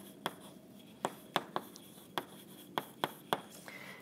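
Chalk writing on a blackboard: a string of sharp, irregular taps and short strokes as words are chalked on.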